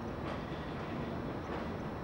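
Transporter bridge gondola travelling across the river: a steady rumble, with faint clicks about once a second.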